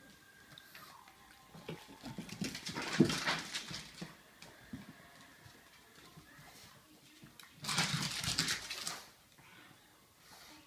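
A pug and a Tonkinese cat tussling, with two loud, noisy bursts of dog sounds from the pug: one about two to four seconds in, and a shorter one near eight seconds.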